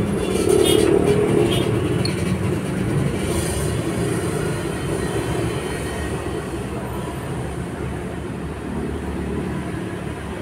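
Steady low background rumble with no distinct single event. It fades slightly towards the end.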